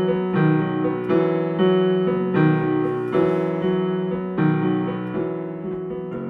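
Solo electric piano playing slow sustained chords, a new chord struck about once a second and left to ring. This is the instrumental introduction to a song.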